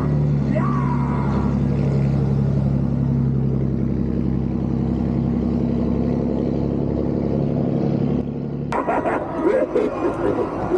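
Pickup truck engine running steadily as the truck drives, a low even drone heard from the truck bed. Near the end the sound cuts abruptly to a noisier passage with a voice.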